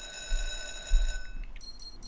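Online slot machine's electronic win sounds: a steady bell-like ringing tone that stops about one and a half seconds in, then a fast run of high beeps starts as the win amount counts up.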